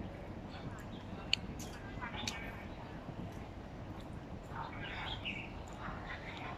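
Outdoor garden ambience: a steady low background noise with a few short, high bird chirps scattered through it.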